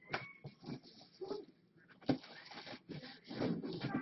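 Scattered light knocks and clicks of objects being handled and moved, with a pitched, voice-like sound rising near the end.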